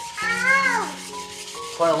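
Chinese meat cleaver being rubbed back and forth on a stone block to sharpen it, a steady scraping grind. A short high-pitched vocal call from a toddler rises and falls about a quarter of a second in, louder than the scraping.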